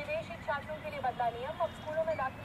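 Faint, high-pitched background voice talking in short, rising and falling bursts, over a steady low background rumble.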